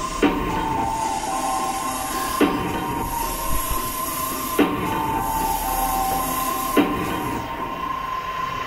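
Instrumental backing track playing its intro: sustained high tones with a heavier hit about every two seconds.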